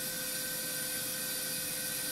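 Radiofrequency surgery equipment running while a pin electrode planes down the base of a skin lesion: a steady hiss with a faint high steady tone, starting just before the pause in talk and stopping just after it.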